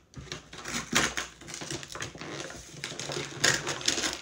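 Irregular clattering clicks and knocks of objects being handled close to the microphone, with two louder knocks about a second in and near the end.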